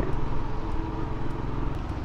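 Motorcycle engine running steadily while riding at road speed, with a low, even rumble and road noise.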